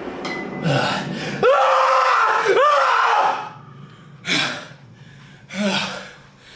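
A man groaning and gasping, out of breath: two drawn-out strained cries that rise and fall in pitch in the middle, then two sharp breaths.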